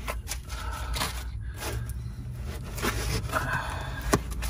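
Dense foam packing being pulled out from around a water filter canister, rubbing and scraping against the canister and the compartment edges in irregular strokes.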